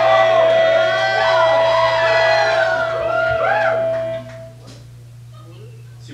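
Live rock band of electric guitar, bass, synth and drums finishing a song: one long note is held over the last chord with voices over it, and the music stops about four seconds in, leaving quieter crowd voices. Recorded on a Wollensak 3M 1520 reel-to-reel tape machine, with a steady low hum underneath.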